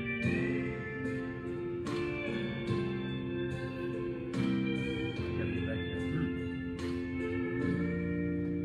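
Instrumental introduction to a gospel song, played from a recorded accompaniment track: sustained chords that change every second or two, ahead of the vocal.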